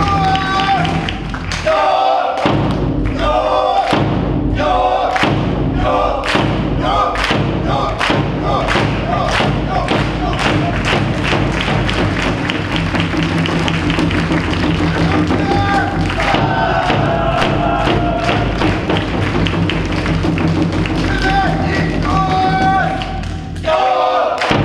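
Brass band playing a cheer-squad tune, driven by a bass drum that keeps a steady beat of about two strokes a second through the middle of the passage.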